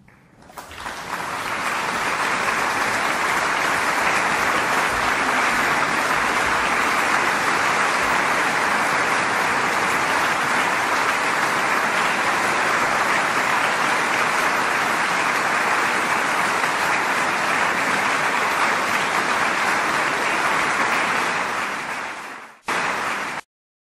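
Audience applauding, swelling up about half a second in and holding steady, then stopping just before the end.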